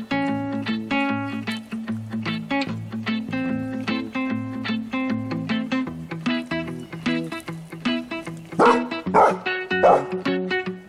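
Plucked-guitar background music throughout, with a dog barking three times in quick succession near the end, in rough tug-of-war play over a rope toy.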